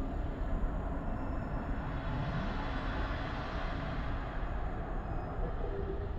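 A steady, deep rumble like a roar of wind or fire, a designed sound effect under the solar eruption images. It swells slightly midway and eases near the end.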